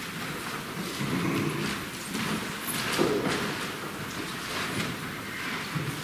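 Echoing church room sound of people moving about, with shuffling and one knock about three seconds in.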